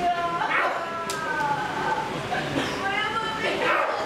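Performers' voices howling like dogs in long, wavering calls that slide in pitch, one after another, with a rough outburst about half a second in and another near the end.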